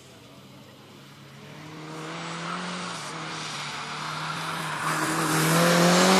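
A car's engine running hard as it approaches at speed on a sprint course, growing steadily louder. There is a brief break in the engine note about three seconds in, and it is loudest near the end as the car slides past on wet asphalt.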